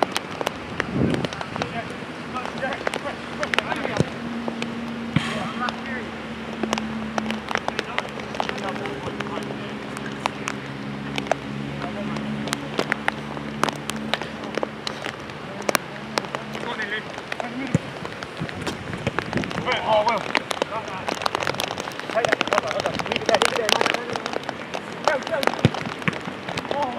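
Five-a-side football on artificial turf: short knocks of the ball being kicked and of running feet over a steady crackling noise, with players shouting near the end. A low steady hum sounds from about four seconds in until about seventeen seconds in.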